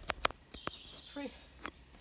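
Camera handling noise: a quick cluster of sharp knocks and clicks as the camera is moved, the loudest about a quarter-second in, with a couple more single clicks after.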